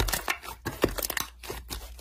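Pale lavender slime being squeezed and pulled apart by hand, giving irregular small crackles and pops, several a second.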